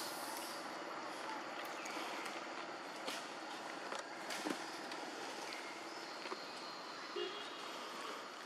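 Steady outdoor background noise with a few faint, brief clicks scattered through it.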